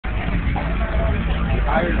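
A car engine running with a steady low rumble, with people talking over it.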